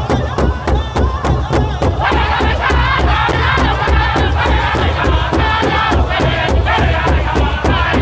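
A powwow drum group strikes a large hide-covered drum in unison in a fast, even beat while the men sing a powwow song together. The voices come in much louder about two seconds in.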